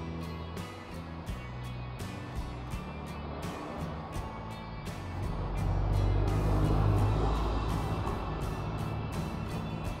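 Background music with a steady beat. In the second half a low rumble swells and then fades over about four seconds.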